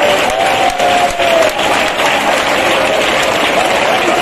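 A congregation clapping steadily, with a few voices calling out over it.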